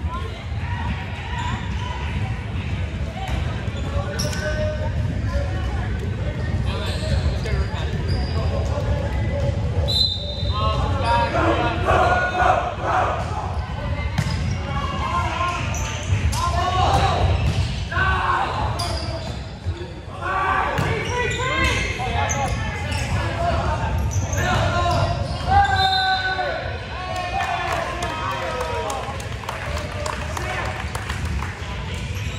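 Indoor volleyball play in a gym: the ball struck and hitting the hardwood floor again and again, with players and spectators shouting. Everything echoes in the hall over a steady low rumble.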